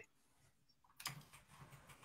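Near silence, with faint background noise coming in about a second in.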